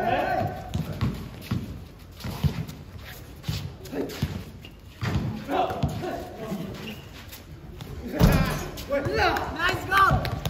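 A basketball bounces and thuds on a concrete court, with scattered impacts and men's voices calling out across the court. A heavy thud about eight seconds in is the loudest sound, and the voices grow busier near the end.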